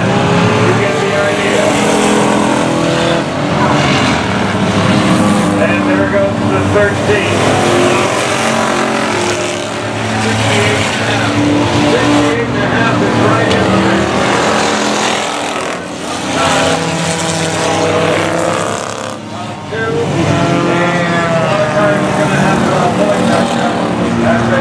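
Several enduro stock cars' engines running and revving together as they race around a paved oval, loud throughout, with the pitch of the engines rising and falling as cars accelerate and pass.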